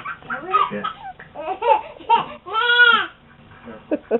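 Baby laughing in short high-pitched bursts, the longest and loudest about three seconds in.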